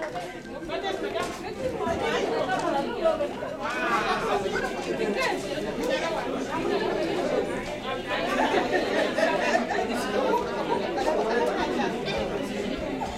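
Crowd chatter: many people talking at once in overlapping voices, with no single speaker standing out.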